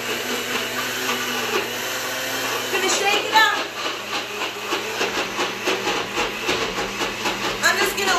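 Ninja personal blender motor running steadily for about three seconds, grinding coconut flakes in melted coconut oil, then stopping.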